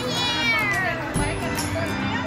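A child's high voice in a wordless, squeal-like vocal glide that falls in pitch over the first second, with music playing underneath.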